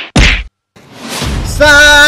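A fight-scene punch sound effect: a whoosh cut short by a single heavy whack a moment in. A swelling sound then rises into a held musical note near the end.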